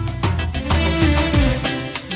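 Instrumental passage of a Syrian wedding song, with no singing: a steady percussion beat and a bass line that slides downward in the second half.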